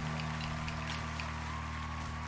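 The song's last chord held as a steady low drone, over an even wash of crowd applause and cheering.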